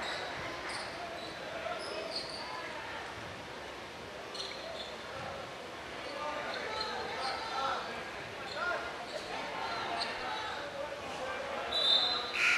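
Gymnasium ambience during a stoppage in a basketball game: a steady murmur of crowd and bench voices, with scattered short sneaker squeaks on the hardwood and a ball bouncing now and then.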